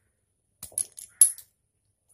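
Fidget spinner being prised apart by hand: a quick run of small, sharp clicks and clinks from its parts, lasting under a second, with the loudest click about halfway through.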